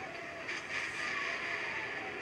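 Sci-fi film soundtrack playing through laptop speakers: a steady spaceship engine noise with faint falling tones, as the big ship flies past on screen.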